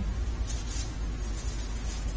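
A steady low electrical hum with a faint hiss, heard in a pause with no speech.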